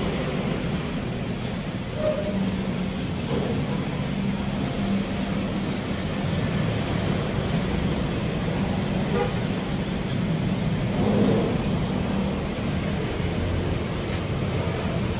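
Steady low rumble of motor vehicles running, with faint voices now and then.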